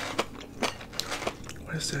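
Close-miked chewing of crispy fried fast food, with irregular sharp crunches and mouth clicks.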